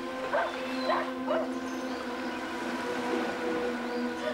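A dog giving three short, high yaps in the first second and a half, over soft sustained background music.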